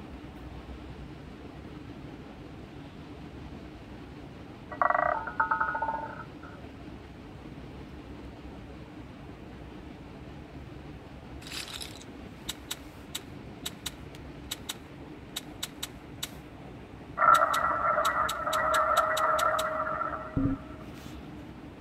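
Online roulette game audio over a steady background hiss: a short electronic chime about five seconds in, then a run of quick clicks as betting chips are placed on the layout, and near the end a longer, louder electronic tone.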